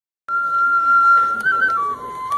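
A flute opens a taiko piece with one long held note. It rises briefly to a higher note and then steps down to a lower held note near the end.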